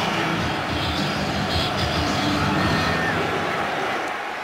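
Large stadium crowd making a steady din of noise during a kickoff, with no single voice standing out.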